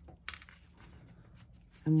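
A single light click about a third of a second in, as the metal crochet hook is set down on the table; otherwise quiet room tone.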